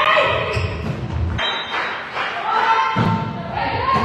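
Indoor volleyball rally: thuds of the ball being played and voices calling out, echoing in a large hall. The sound changes abruptly about a second and a half in and again about three seconds in, where the highlight clips are cut together.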